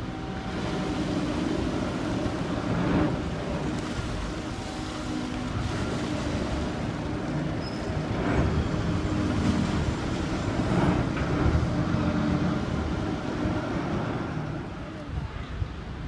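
Engine running steadily among city traffic noise, with a few brief louder swells as vehicles pass.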